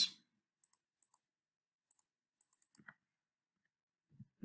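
Faint computer mouse clicks and keyboard keystrokes: short, sharp clicks, several in quick pairs like double-clicks, then a quicker run of key presses a little before the end.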